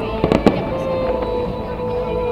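Fireworks bursting, a quick cluster of four sharp bangs in the first half second, with music playing underneath.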